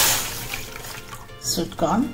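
Sweet corn puree thinned with water poured into a hot steel wok with butter and garlic: a sizzling hiss that dies away within about half a second, then a fainter pouring of liquid.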